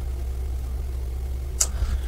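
Steady low hum with a brief sharp click about one and a half seconds in.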